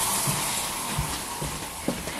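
Water running steadily from a tap, slowly fading toward the end.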